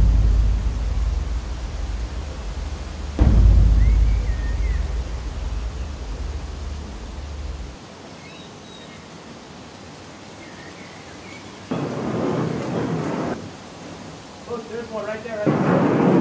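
Thunder sound effect: two sudden claps, the first at the start and the second about three seconds in, each followed by a deep rumble that dies away over several seconds. Near the end there is a shorter burst of noise, and then voices.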